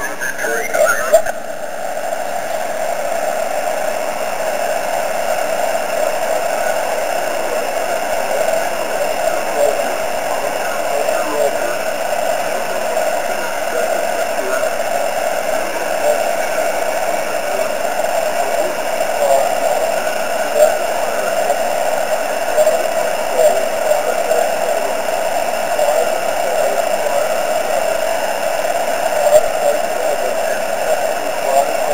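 Amateur-radio moonbounce receiver audio: steady receiver hiss, strongest in a narrow mid-pitched band, as the station listens for the weak echo of the other station's reply. It sets in about a second in.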